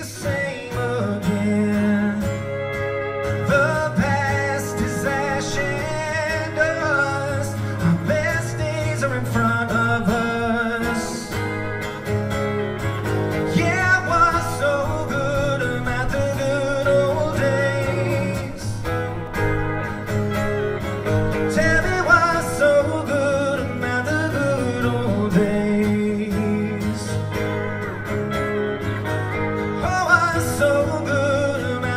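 A man singing a slow song into a microphone while strumming an acoustic guitar, amplified through a hall's PA and heard from the audience, with long held notes.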